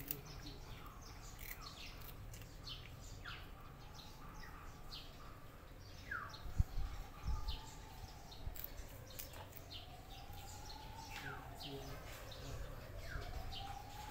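Birds chirping over and over in short, quick, falling calls. From about five seconds in, a faint siren wails slowly up and down. A couple of low thumps come around the middle and are the loudest moments.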